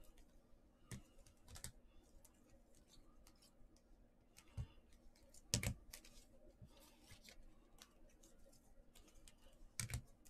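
Faint, scattered clicks and taps of trading cards in hard plastic holders knocking together as a stack is handled and sorted by hand, with a sharper clack about five and a half seconds in.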